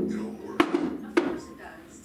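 Television audio of a commercial, with background music and a voice, fading down. Two sharp knocks come about half a second apart in the first second and a half.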